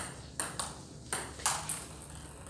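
Table tennis ball in a rally, clicking sharply off the paddles and the table about five or six times, at uneven intervals of a few tenths of a second.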